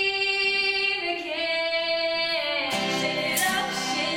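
Girls' choir singing, a long held note stepping up in pitch about a second in, then fuller chorded voices joining near the end, with acoustic guitar accompaniment.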